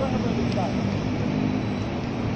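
Steady rumble of city street traffic, with faint voices of passers-by over it.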